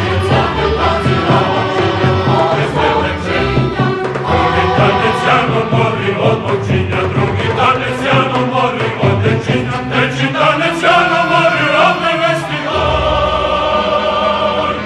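Mixed choir singing with a chamber ensemble, in a steady pulse of accented beats.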